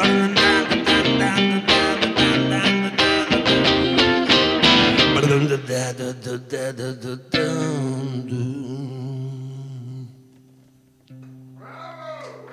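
Electric guitar played live, with fast rhythmic picked chords for the first half. After that the playing thins out, and a hard-struck chord at about seven seconds is left to ring and slowly die away, nearly silent before a low note sounds again near the end.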